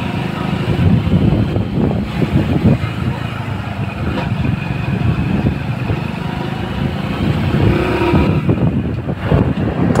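Old Hero Honda Splendor's small single-cylinder four-stroke engine running steadily as the motorcycle rides slowly along a road, with wind rushing over the microphone.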